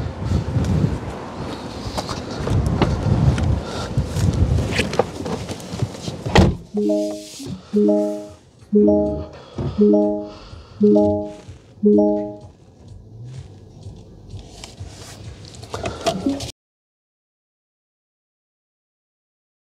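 Wind buffeting the microphone, then a car door shutting about six seconds in. After it, the Lucid Air's warning chime sounds six times, about once a second.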